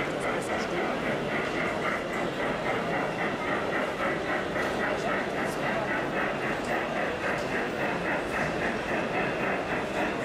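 Model steam locomotive chuffing in a steady rhythm of about three beats a second, over a continuous murmur of crowd chatter.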